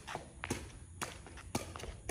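Sepak takraw ball being juggled off the foot, sharp taps about twice a second as it is kicked up again and again.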